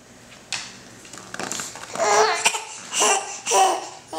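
A baby babbling in a few short, high-pitched vocal bursts, after a soft breathy sound about half a second in.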